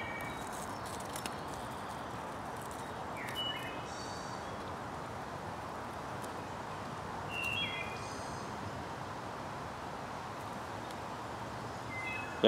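Small fire of wood shavings and feather sticks burning with faint, scattered crackles over a steady woodland hiss. A bird chirps briefly twice, about three and a half and seven and a half seconds in.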